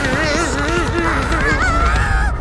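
A cartoon character's high, wavering cry, its pitch wobbling up and down throughout, over a low rumble from an explosion.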